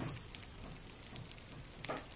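Faint, irregular crackling and popping from popping candy sprinkled over a jelly dessert.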